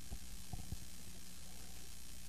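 Pause in a narrated recording: a faint steady hiss and low hum from the recording's background noise, with a few soft low thumps in the first second.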